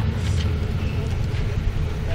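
Low, steady rumble of outdoor background noise, with no clear distinct event.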